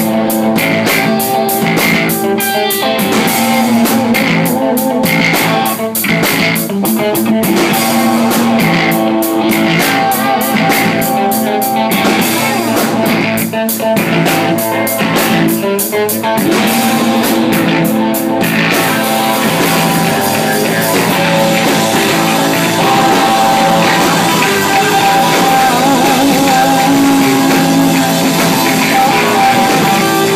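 Live instrumental rock band playing loud, with electric guitars and a drum kit. Steady cymbal and drum hits drive the first two-thirds, then drop away about 18 seconds in, leaving mostly sustained guitar.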